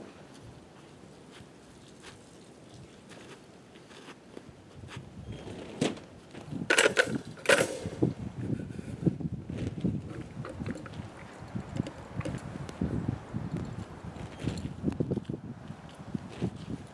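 Two sharp metallic knocks about seven seconds in, as the stuck snap latch of a calf's lead is banged against a wire fence panel and breaks off. Soft, irregular rustling and knocking of handling follows.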